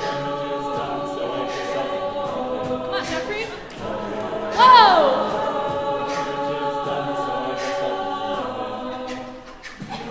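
Mixed-voice a cappella group singing sustained wordless chords, with a lead voice making one loud falling slide about four and a half seconds in. Short crisp ticks keep time over the chords.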